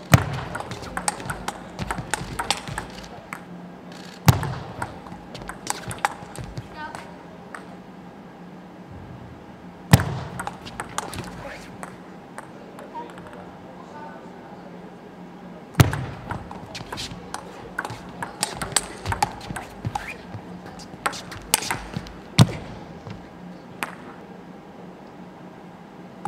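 Table tennis rallies: the celluloid-type ball clicking sharply off bats and table in quick back-and-forth hits. Several separate rallies follow one another with short pauses between them.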